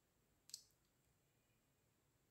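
Near silence, with a single faint, sharp click about half a second in.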